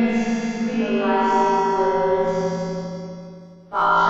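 Background music in slow phrases of long held notes. The sound dies down toward the end, then a new phrase comes in sharply just before the close.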